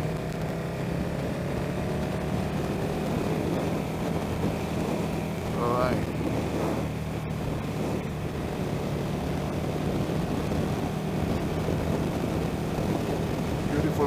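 Motorcycle engine running at a steady cruise, a steady low drone under wind rush on the microphone.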